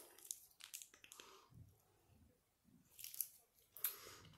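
Faint chewing with small mouth clicks close to the microphone, and a short burst of noise about three seconds in.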